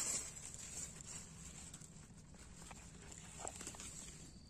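Dry leaves and forest-floor litter rustling and crackling as a hand digs a mushroom out of the soil. The rustle is loudest right at the start, followed by scattered small snaps and crackles.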